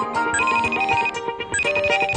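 Electronic ringtone of an incoming video call: a short melodic phrase of bright tones that starts over about a second and a half in, heard over background music.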